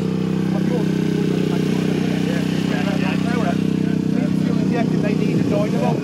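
Vespa scooter engine idling steadily after a jump start, running to recharge its flat battery, with voices talking over it. It fades out just before the end.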